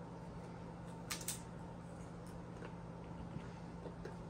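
A low, steady hum, with two brief faint clicks about a second in.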